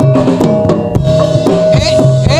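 Live Javanese gamelan-style music for the dance: rapid, dense drum strokes over a steady held tone, and near the end a wavering, gliding high melody comes in.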